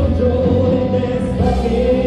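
Live rock band playing, with electric guitars, electric bass and drums, and singing over them. A long note is held through most of it.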